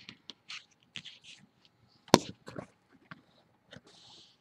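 Crisp rustles and crinkles of a folded paper dollar bill being creased and handled, as a string of short crackles, with one sharp, much louder tap about two seconds in.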